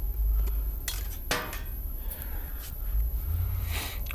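Handling noise as cardboard eclipse glasses are taken off the camera lens: a handful of light clicks and taps, one with a short squeak, over a low rumble of handling.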